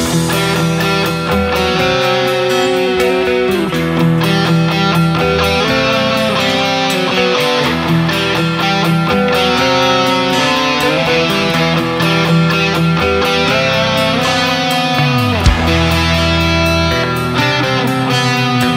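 Instrumental hard rock passage led by electric guitars, with a steady beat and no singing; a low note slides down about three-quarters of the way through.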